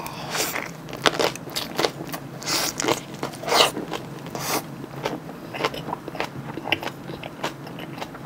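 Close-up chewing of a mouthful of salted napa cabbage wrapped around raw oyster and kimchi filling: irregular wet crunches as the firm cabbage leaf breaks up between the teeth.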